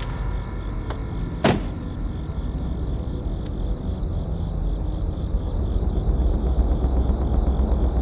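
A vehicle door slams shut once about a second and a half in, over a steady low rumble that grows louder in the second half.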